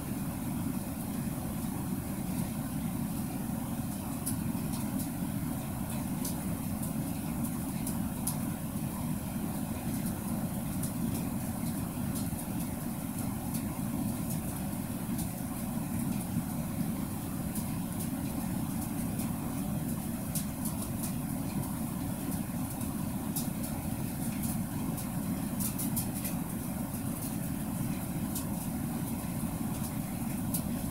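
Steady low rumbling noise that does not change, with a few faint high clicks scattered through it.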